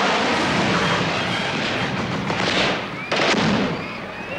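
Jet aircraft flying low over a military parade in formation, a loud roar of noise that thins out, with a sharp loud burst about three seconds in.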